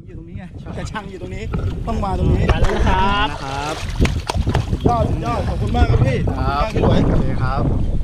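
Water splashing and churning as a giant catfish thrashes its tail and swims off from the lake edge, with a few short sharp splashes about halfway through. Men's voices call out over it, and wind rumbles on the microphone.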